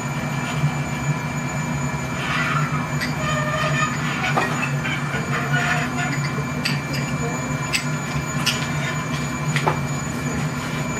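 Steady roar and hum of a glass furnace's burner and blower. A few sharp clinks sound in the second half.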